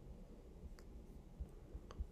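A couple of faint computer mouse clicks over quiet room tone, one just under a second in and a slightly louder one near the end.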